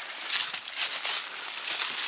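Dry brush and fallen leaves rustling and crackling as someone pushes through undergrowth on foot, in several irregular bursts.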